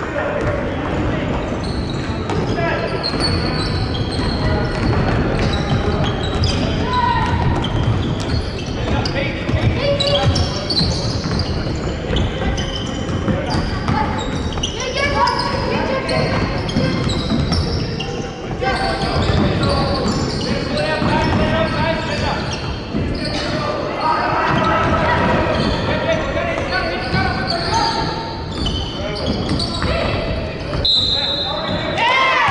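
A basketball bouncing on a hardwood court during play, with players and spectators calling out indistinctly, all echoing in a large hall.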